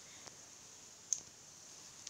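A few faint clicks, the sharpest about a second in, over low background hiss: light taps on a touchscreen as an on-screen drawing tool is opened.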